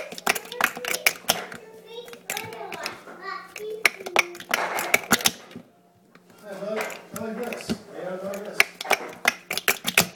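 Plastic speed-stacking cups clacking together and against the stacking mat as they are stacked and unstacked, in quick runs of sharp clicks with a short pause about six seconds in.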